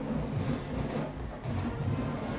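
Music with low drumming, such as a school band plays in the stands at a football game, heard at a moderate level.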